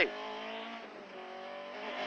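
Rally car engine heard from inside the cabin, running at a steady note on a stage, its pitch easing down slightly about halfway through.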